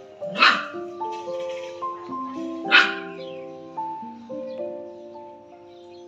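A dog barking twice, two short sharp barks a little over two seconds apart, over background music of held, slowly changing notes.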